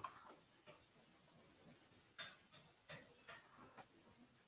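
Near silence with about half a dozen faint, short clicks at irregular intervals, from a computer keyboard and mouse in use.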